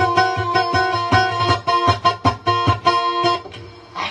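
Kutiyapi, the two-string boat lute of dayunday, playing a quick plucked melody over a steady low drone, stopping abruptly about three and a half seconds in.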